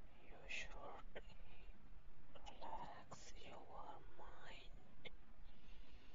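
A person whispering, breathy and without voiced tone, with short hissing s-like sounds now and then.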